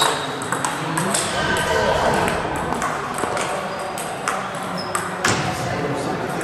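Celluloid-type table tennis ball clicking off rubber paddles and the table, with sharp hits in the first second or two and another strong click about five seconds in, heard with voices in the background.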